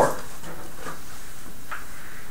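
Steady room hiss in a lecture room, with a faint short tap of chalk against a blackboard near the end.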